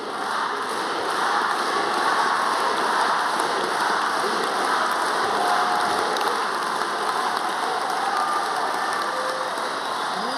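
Large audience applauding, swelling in the first second and then holding steady.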